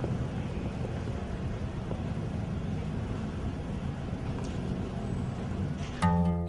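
Steady street-traffic ambience, laid in as the opening sound effect of a song, with no music over it yet.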